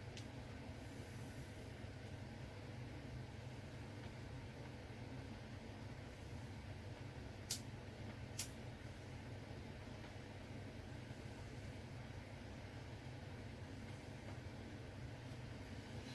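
Steady low room hum, broken about halfway through by two sharp clicks a little under a second apart as small plastic alcohol-ink dropper bottles are handled over the glass.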